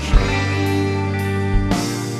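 Live rock band playing: held guitar chords over bass, with two drum hits, one just after the start and one near the end.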